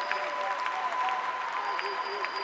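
Congregation applauding: dense, steady clapping from many hands.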